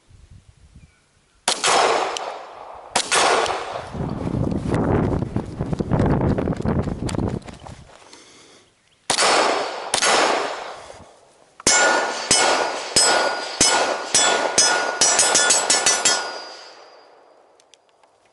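Glock pistol firing at steel targets: several spaced shots, then a fast string of shots in the second half, with the struck steel plates ringing after the hits.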